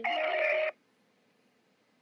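A brief electronic tone over the telephone line, lasting under a second and cutting off sharply, followed by faint line hiss.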